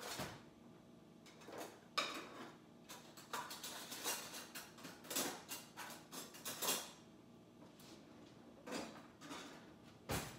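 Kitchen utensil noise: a wooden spoon knocking and scraping against a container in a quick irregular run of short clatters from about two to seven seconds in, with a few more near the end.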